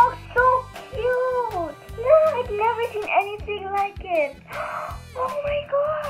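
Background music with a steady low beat and sustained tones, with high, arching voice-like sounds over it.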